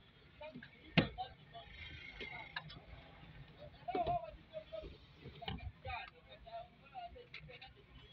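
Plastic interior trim on a pickup's windscreen pillar being pressed into place by hand: a sharp click about a second in, then scattered smaller clicks and creaks as the panel's clips are pushed home.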